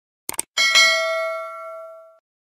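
Sound effect of a mouse double-click followed by a bright notification-bell ding that rings and fades over about a second and a half.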